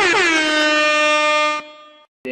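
A loud, buzzy horn-like tone that wavers quickly in pitch, slides down onto a steady held note, and cuts off about one and a half seconds in, leaving a faint fading tail.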